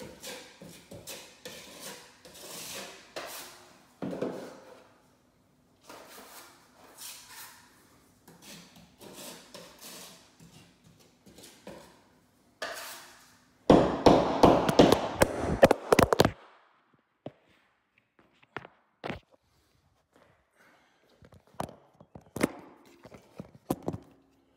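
Drywall knife scraping and spreading joint compound over a wall patch in short, irregular strokes. About two-thirds of the way through comes a much louder burst of noise lasting a couple of seconds, then a few scattered taps.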